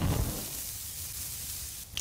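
Hot dog sizzling on a charcoal grill over open flames: a steady hiss that opens with a short low thud and stops just before speech resumes.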